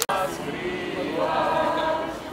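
A crowd of people singing a song together, many voices in unison.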